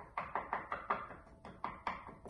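A spoon knocking rhythmically against the side of a bowl, about five times a second, while stirring half-and-half to dissolve clumps of inulin and probiotic powder.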